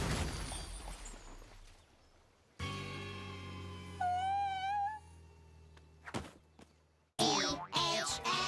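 The tail of a cartoon explosion dying away over about two seconds. Then a comic musical sting: a held chord with a high, wobbling note on top for about a second. Near the end, a new burst of music starts.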